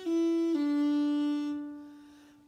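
Fiddle played in one slurred down bow on the D string: a first-finger note steps down to the open D string, which is held and fades away.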